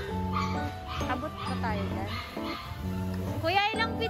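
Background pop song with a steady beat, over which a Siberian husky makes a few sliding, rising-and-falling vocal calls, the clearest near the end.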